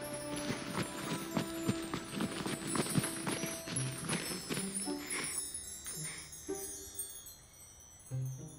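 Sparkling chimes with many quick, tinkling strikes over soft background music, thinning out and fading near the end.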